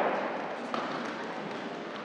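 Steady background noise of a large, echoing hall, with one faint tap about three quarters of a second in.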